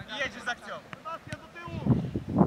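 Children's voices calling out, with a short sharp tap a little past the middle.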